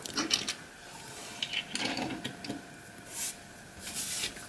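Small diecast metal toy trucks being handled on a wooden tabletop: a few light clicks and knocks as they are set down, then soft scraping and rubbing as they are slid into line, with a brief brushing hiss about three seconds in.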